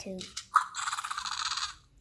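Fingerlings Untamed T-Rex toy roaring from its small built-in speaker, set off by poking its nose: one short roar starting about half a second in and lasting just over a second.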